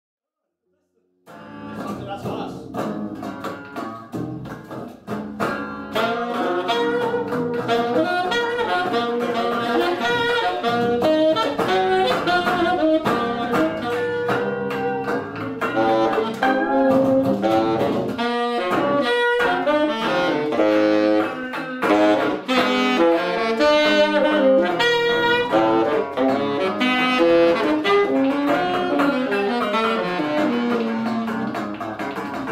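Free-improvised trio music of saxophone, cello and ten-string electric guitar, starting about a second in: busy, shifting melodic lines with many short, sharp attacks, the saxophone most prominent.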